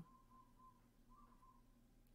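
Near silence: quiet room tone, with a faint, thin whistle-like tone that comes and goes a few times.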